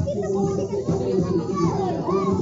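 Crowd of onlookers, children among them, talking and calling out over background music with long held notes.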